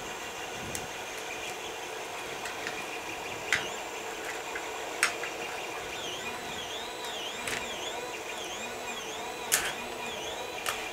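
Plastic cable ties and a 3D-printed PLA filament spool being handled: a handful of sharp plastic clicks and taps, spread out, over a steady background hum.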